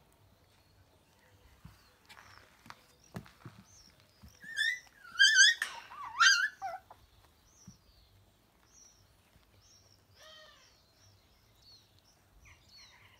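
Puppies at play giving a loud run of high-pitched, wavering yelps from about four seconds in to nearly seven, then a single falling yip a few seconds later. Faint high chirps and light knocks lie between.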